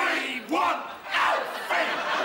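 A small group of people cheering and yelling together, several voices shouting at once. It opens with a couple of rising whoops, then the voices pile into one continuous din.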